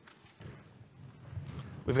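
Muffled low thumps and knocks from a live handheld microphone being handled and passed along, growing louder toward the end. A man starts speaking at the very end.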